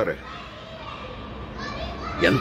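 Faint distant voices over a low steady background hum, with a brief slightly louder bit near the end.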